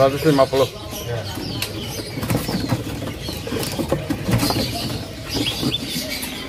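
Many caged birds calling together: short high chirps and whistles over a low, repeated dove-like cooing, with several sudden flutters of wings against the cages. A man's voice is heard briefly at the start.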